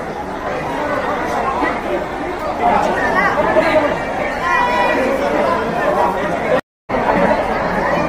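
Loud chatter of a tightly packed crowd, many voices talking and calling out at once. The sound drops out completely for a split second about two-thirds of the way through.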